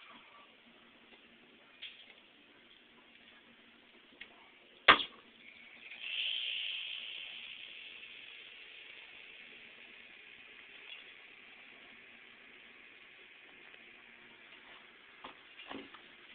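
An overvoltaged 680 µF 25 V electrolytic capacitor, run on a 63 V supply, blowing out: one sharp pop about five seconds in, then a hiss as it vents, strongest just after the pop and slowly fading.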